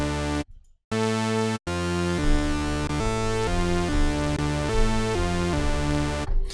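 Surge software synthesizer in mono play mode sounding a patch of three oscillators stacked an octave apart. A held note cuts off about half a second in. After a short break, notes follow one another without gaps, changing pitch roughly twice a second.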